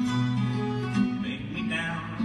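Acoustic guitar played live: plucked strings over steady, sustained bass notes, with a brief higher wavering line in the second half.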